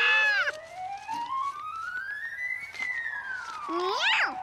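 Cartoon sound effect: a single whistle-like tone glides slowly upward for nearly three seconds, then slides back down, opening with a brief cluster of arching tones and ending in a few quick sweeps.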